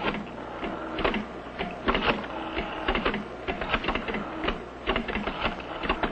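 Telephones being dialed in a speed race between the old and touch-tone ways: rapid, irregular mechanical clicking of dials and keys in short clusters.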